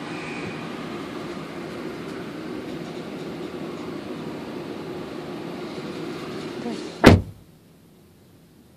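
A steady low hum, then a car door shutting with a single loud thump about seven seconds in, after which the hum is much fainter.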